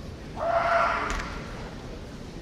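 A kendo competitor's kiai: one loud, high, steady shout lasting under a second, starting about half a second in. A short sharp crack follows just after a second in.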